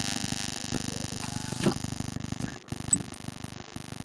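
Continuous rough, fast-fluttering background noise picked up by an open microphone on a video call; it cuts off suddenly just after the end.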